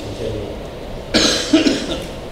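A man coughing twice in quick succession, about a second in.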